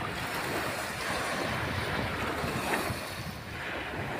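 Small waves breaking and washing up on a sandy shore in a steady wash, with wind on the microphone.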